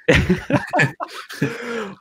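Laughter in a few short, breathy bursts during the first second, followed by a brief voiced sound near the end.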